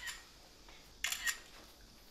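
Smartphone camera shutter sound as photos are taken: a short click right at the start and another, double-pulsed one about a second in.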